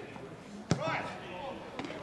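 A football struck once in a free kick: a single sharp thud about two-thirds of a second in. Players shout faintly around it.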